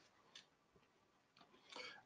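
Near silence between spoken answers, broken only by a couple of faint, short clicks.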